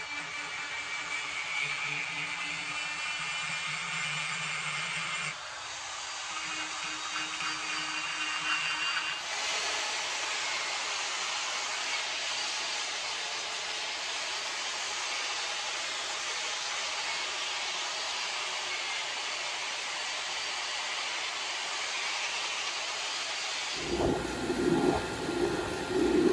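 Angle grinder fitted with a wire cup brush running against a hot H13 steel tool clamped in a vise: a steady, harsh, hiss-like scouring with a motor hum underneath in the first several seconds. It is brushing out sanding marks to leave a brushed satin finish. The brushing stops about two seconds before the end.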